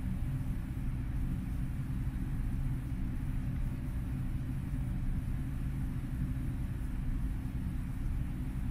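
Steady low hum and rumble of background room noise, unchanging, with no distinct events.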